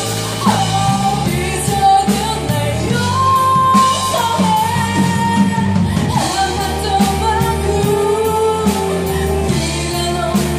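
Live rock band playing: a woman singing into a microphone over electric guitar, electric bass and drum kit.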